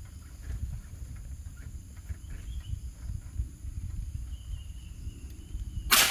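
Naga Runting tactical air rifle firing a single shot near the very end, a sharp crack with a short tail. Before it there is only faint outdoor background with a low rumble.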